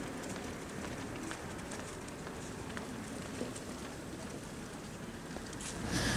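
Faint, steady outdoor background noise: a low rumble and hiss with a few light ticks.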